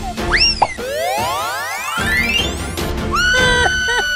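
Cartoon sound effects over background music: a quick up-and-down pitch swoop, then a long rising slide lasting over a second, then a held tone from about three seconds in.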